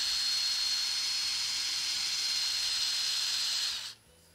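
Turning tool cutting the outside of a wooden bowl spinning on a lathe: a steady hiss of shavings coming off, with a thin high tone through it, that stops abruptly near the end as the cut ends.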